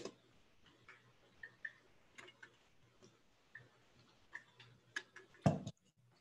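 Irregular small clicks and ticks of a computer mouse being clicked and scrolled, with one louder, deeper thump near the end.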